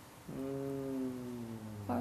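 A person humming one low, held note that sags slightly in pitch, lasting about one and a half seconds.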